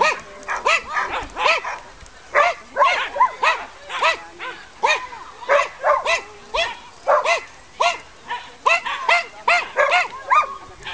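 A dog barking repeatedly in short, high-pitched barks, about two or three a second, with hardly a pause.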